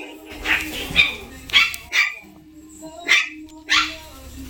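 A Cavapoo puppy sneezing, a string of about six short, sharp sneezes spread over a few seconds.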